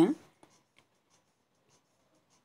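A woman's voice ends at the very start, then near silence with a few faint ticks.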